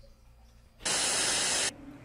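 A loud burst of static-like hiss, under a second long, starting about a second in and cutting off sharply; before it only faint low background hum.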